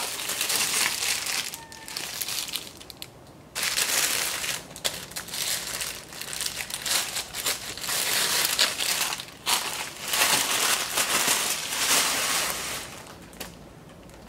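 Plastic packaging crinkling and rustling in irregular bursts as it is handled and pulled open, with a short lull about three seconds in, fading near the end.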